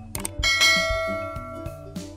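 Click sound effect followed by a bright bell ding that rings out and fades over about a second and a half: the notification-bell sound of a YouTube subscribe-button animation, over quiet background music.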